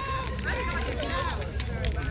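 Several people's voices talking and calling out at once, not close to the microphone, over a steady low rumble.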